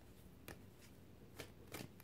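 Tarot cards handled in the hands: a few soft, short card flicks and clicks over near silence.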